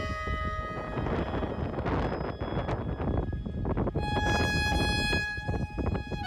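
Background fiddle music playing a traditional-style tune. The fiddle notes give way to a noisy, unpitched stretch for a few seconds, then the fiddle comes back about two-thirds of the way in.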